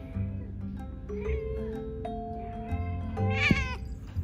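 Female cat in heat calling: a couple of short meows, then a louder, drawn-out yowl near the end. Background music with held mallet-like notes plays throughout.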